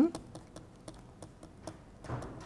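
Light, irregular clicks of a pen stylus tapping and sliding on a tablet screen while a word is handwritten, about three or four a second.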